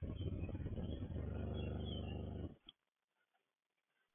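Small pan-tilt gear motor of a robot-style indoor IP camera, giving a steady low buzz heard through the camera's own microphone as it rotates. It starts with a click and stops about two and a half seconds in.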